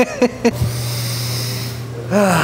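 A man's short breathy laugh, then a steady low hum with a faint hiss behind it.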